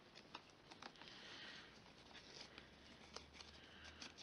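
Near silence, with the faint rustle and a few small clicks of ribbon being handled and threaded around a cardstock box.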